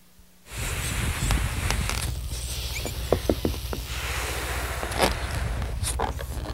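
A boy blowing into a long rubber balloon to inflate it, with a few small handling clicks, over a steady outdoor background hiss.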